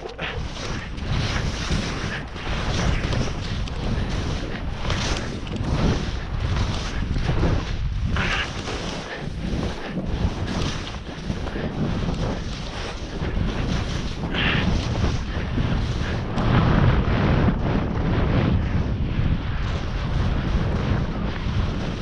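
Wind rushing over the microphone and skis sliding and scraping on snow during a fast run down a steep chute. The rush is continuous, with a louder swish every few seconds.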